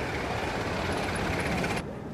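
Ford Model T's four-cylinder engine running as the car drives past on the road, amid steady street traffic noise. The sound cuts off abruptly near the end.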